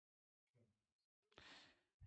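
Near silence, with a faint breath from the speaker near the end.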